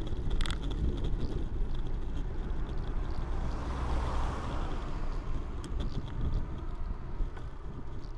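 Steady wind and road rumble from a handlebar-mounted camera on a moving road bike. About four seconds in, a car overtakes close by, its tyre and engine noise swelling and then fading, with a few light clicks from the bike over the road surface.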